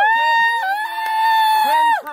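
A person's long, high-pitched cheering yell, held for about two seconds with a small drop in pitch about half a second in.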